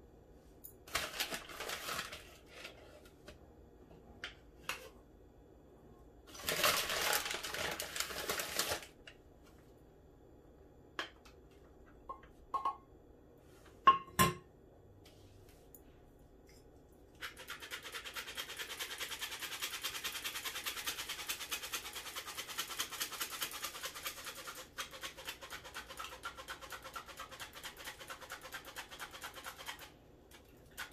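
Hand-crank metal flour sifter being turned, its wire agitator scraping the mesh in a fast, even ticking rhythm that starts a little past halfway and runs on with a brief pause. Before it come handling rustles and knocks, the loudest a sharp clink.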